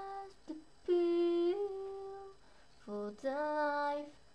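A young female voice singing unaccompanied: long held wordless notes, each stepping a little in pitch, with short breaks between them, in a small room.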